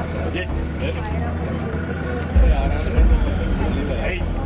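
Indistinct voices of people talking over a steady low rumble, with two short low thumps about two and a half and three seconds in.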